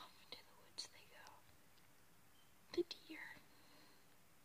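A person whispering faintly, with a few sharp clicks, the loudest about three-quarters of the way through.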